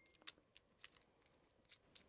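Faint, light clicks and clinks of glass on glass: a glass dropper tapping against a small bottle as it is handled and put back in, several quick ticks in the first second and a half.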